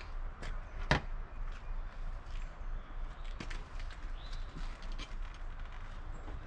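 Footsteps and a sharp knock as a person climbs onto the front of a fiberglass travel trailer, followed by scattered faint clicks and scuffs, over a low steady rumble.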